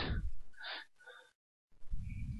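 The tail of a man's spoken word, then a short intake of breath about half a second in. After a moment of dead silence, low, rumbly mouth or microphone noise comes in near the end.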